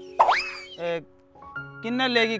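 A comic sound effect: a sudden hit with a quick rising whistle-like glide, about a quarter of a second in, over background music with long held notes.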